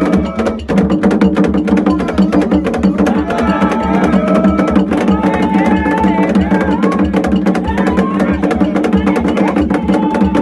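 Afro-Dominican ceremonial drumming: several rope-laced skin drums played by hand in a fast, dense rhythm, with sticks clacking on wood. Voices sing over the drums.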